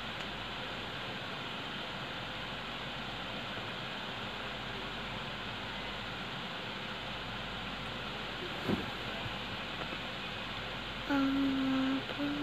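Electric stand fan running with a steady whir. Near the end a person starts humming a steady note.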